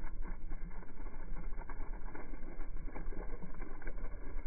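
Water gushing steadily from a wide hose and splashing onto dry grass, over a constant low rumble.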